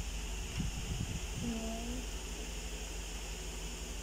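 Steady room hum and hiss throughout, with one short, soft voiced murmur about a second and a half in.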